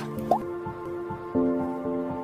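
News channel's logo jingle: sustained electronic chords with a short upward-gliding blip near the start, then a shift to a new, louder chord about one and a half seconds in.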